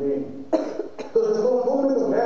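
A person coughs: one sharp cough about half a second in and a shorter one at about one second. A man's speaking voice follows.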